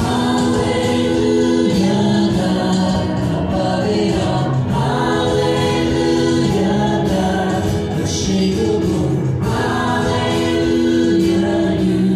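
Live worship band playing a song, with several voices singing together in long held notes over the band.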